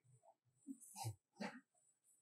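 A few faint, brief calls from macaque monkeys: short squeaks or grunts, about three of them in the second half.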